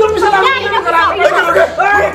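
Several people talking over one another in a quarrel, their voices overlapping.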